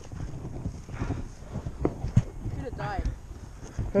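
Irregular footsteps of a person running on a packed-dirt BMX track. Brief faint voices sound in between.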